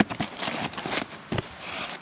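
Cardboard box and paper packaging being opened and handled: rustling and crinkling with several sharp clicks and knocks, the loudest about one and a half seconds in.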